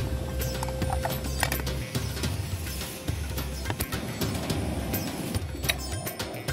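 Background music with a repeating bass line and clicking, clip-clop-like percussion.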